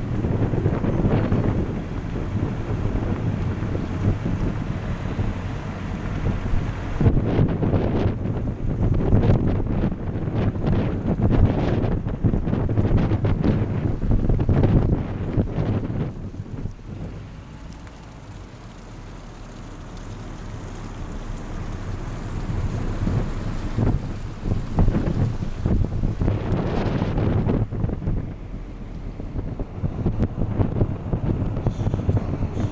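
Wind buffeting the microphone from an open window of a moving car, over the car's road noise. It is gusty and uneven, easing off for a few seconds past the middle, then building again.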